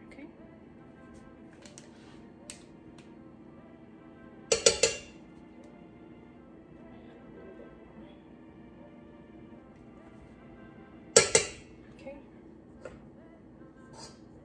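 A metal spoon clinking against a stainless steel saucepan while hibiscus powder is added to a pot of hair oil: two sharp clinks, one about four and a half seconds in and one near the end, with a few lighter taps between.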